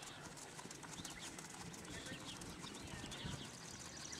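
A horse's hoofbeats on sand arena footing, soft and faint.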